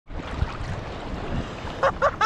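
Shallow sea water washing around, with wind buffeting the microphone in low gusts. A voice starts just before the end.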